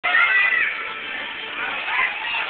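Young children's high-pitched squeals and shouts, loudest in the first half-second, over a steady background of play.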